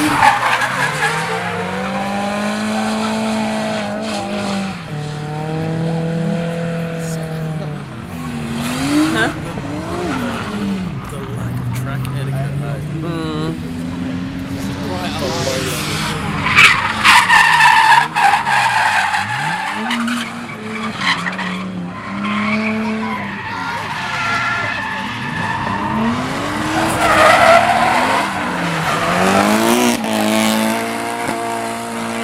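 Drift cars' engines revving up and down again and again as they slide through the corners, with the hiss and squeal of tyres spinning sideways. The tyre squeal is loudest about halfway through and again near the end.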